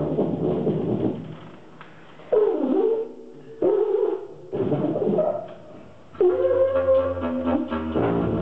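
Live jazz wind instruments, saxophone and tuba among them. A full-ensemble passage fades about a second in, then come short phrases of sliding, bent notes with gaps between them, and a low held note joins near the end.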